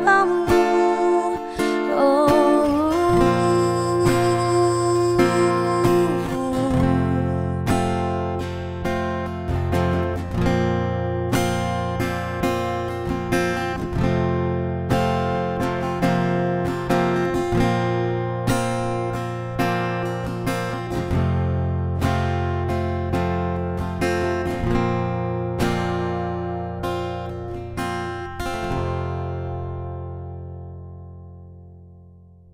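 Acoustic cover song: a singer holds a last wavering note over the first few seconds, then a picked acoustic guitar plays on alone. The guitar fades out near the end.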